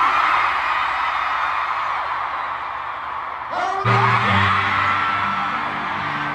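A stadium concert crowd screaming and cheering, with high rising whoops. About four seconds in, music starts up under the cheering with held low notes.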